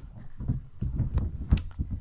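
Handling noise: low thumps and bumps with a few sharp clicks, the loudest about one and a half seconds in, as an object is fetched and picked up close to the microphone.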